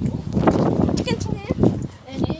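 Rustling and bumping of a handheld phone moving against clothing, with short unclear voices about a second in.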